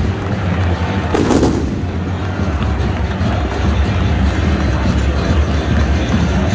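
Fireworks and pyrotechnics going off over a loud, steady stadium crowd, with a sharp bang a little over a second in.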